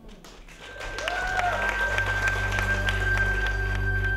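Audience applause, a steady run of claps about four a second over a noisy haze, growing louder after the first second. Soft ambient music with a sustained high tone fades in underneath.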